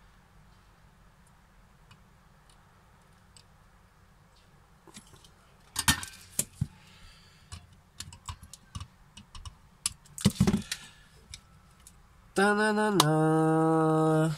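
Flush side cutters snipping component leads off the underside of a soldered circuit board: scattered sharp clicks and snaps after several quiet seconds. Near the end a loud steady pitched tone sets in and steps down to a lower note.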